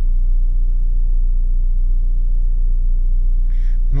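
VW Passat B5's 1.8-litre four-cylinder petrol engine (ADR) idling steadily, a constant low hum heard from inside the cabin. The car lacks power, a fault the scan traces to the camshaft position (Hall) sensor.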